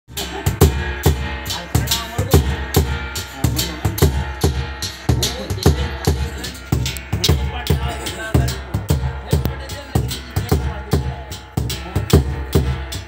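A large rope-laced barrel drum beaten with a stick in a steady rhythm of about two main strokes a second, with large metal hand cymbals clashing along with it.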